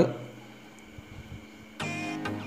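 Background music, faint at first, getting louder near the end as a guitar-like part comes in.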